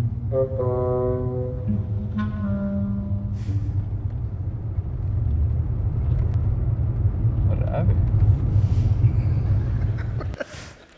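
Steady low rumble of a car engine heard from inside the car, with two sustained horn toots in the first few seconds.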